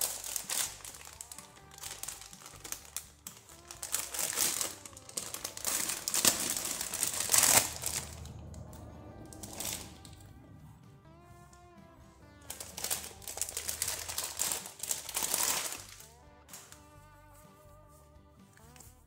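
Plastic packaging bag crinkling and rustling in irregular bursts as a new inner tube is unwrapped, with quiet background music.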